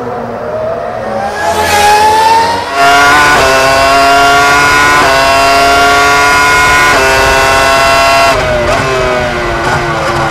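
A car engine revving up, its pitch rising over the first two seconds, then running loud at high revs with a few brief steps in pitch before it drops away near the end.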